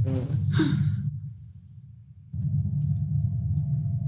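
A man's brief "uh" and breath, then a steady low hum with a faint held higher tone that comes in about two seconds in.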